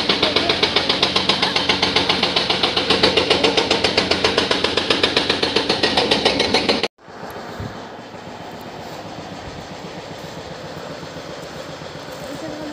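Excavator-mounted hydraulic rock breaker hammering rock in a fast, even pounding of about eight blows a second, with the machine's engine under it. It cuts off suddenly about seven seconds in, leaving a quieter steady noise.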